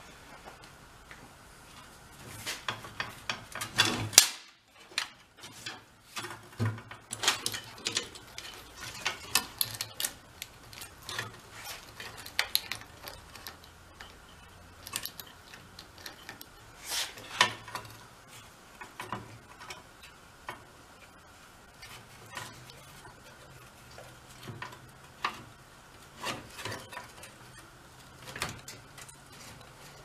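Metallic clicks, clinks and chain rattles as the rear wheel of a VéloSolex 3800 moped is fitted back into the frame, its chain hooked onto the sprocket and the axle hardware worked by hand; irregular and busier in the first half.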